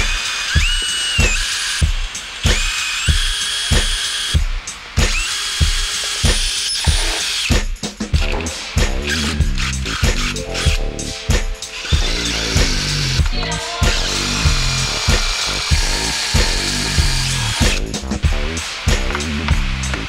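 Cordless drill boring holes up through the car's steel floor pan, run in several short bursts that each rise quickly to a steady whine, over background music with a steady beat.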